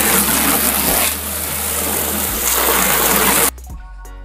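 A strong stream of running water rushing and splashing as a wooden branch is rinsed under it. It cuts off abruptly about three and a half seconds in, and background music with a beat takes over.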